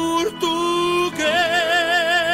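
A Portuguese-language song: a singer holds long notes over instrumental backing. The voice steps up to a higher note about a second in and holds it with a wide vibrato.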